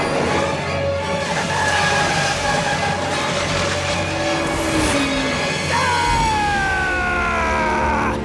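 Film score music mixed with action sound effects. From about six seconds in, several tones glide downward together.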